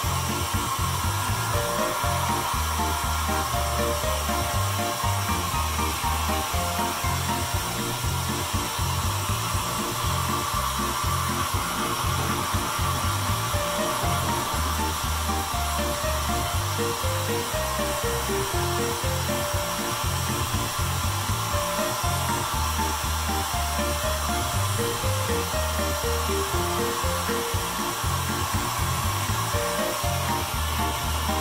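Handheld hair dryer blowing steadily on a wet cat's fur, under background music with a stepping bass line and melody.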